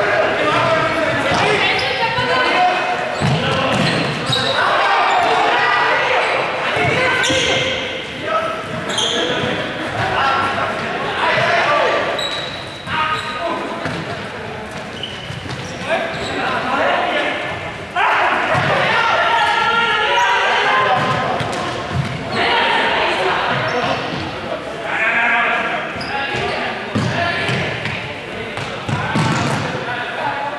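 Many players' voices and shouts echoing in a large sports hall, with balls bouncing and thudding on the floor now and then.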